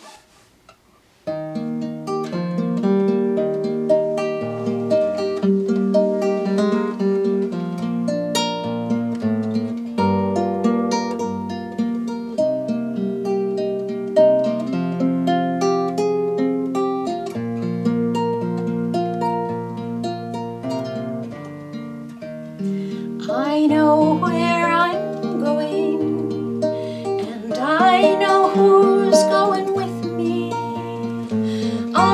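Nylon-string classical guitar with a capo, fingerpicked: a gentle picked introduction starting about a second in. About 23 seconds in, a woman's singing voice joins over the guitar.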